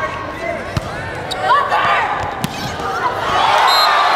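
Volleyball rally in an indoor arena: two sharp hits of the ball about a second and a half apart amid players' calls, then the crowd cheers as the point is won, swelling from about three seconds in.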